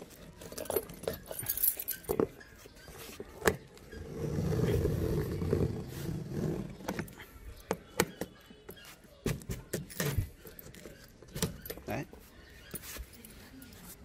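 A bunch of keys jangling and scraping as they are used to slit the packing tape on a cardboard box, with the tape and cardboard rustling. There is a louder, longer scraping stretch about four seconds in.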